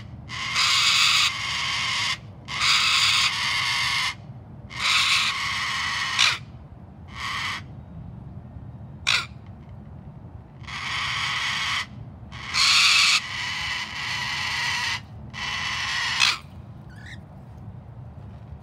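A series of about ten loud, harsh animal calls, each lasting up to about a second and a half, with short pauses between them.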